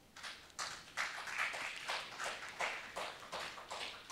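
A few people clapping in short, scattered applause, starting a moment in, irregular claps at a few per second.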